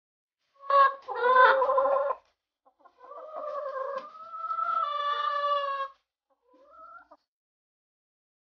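Domestic chickens calling: a loud short call burst, then a long drawn-out rooster crow about three seconds in, and a short rising call near the end.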